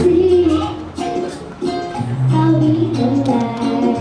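A young girl singing into a handheld microphone over a recorded backing track with plucked-string accompaniment and steady bass notes. Her vocal line breaks briefly about a second in, then carries on.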